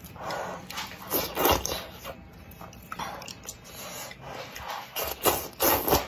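Close-miked eating sounds: a string of short, noisy slurps of wide noodles in spicy soup, with chewing between them. The loudest slurps come about a second and a half in and just before the end, where the broth is sipped straight from the bowl.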